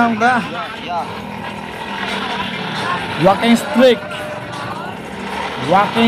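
Busy street at night: people's voices over a steady noise of traffic, with short loud bursts of voice near the start, around the middle and near the end.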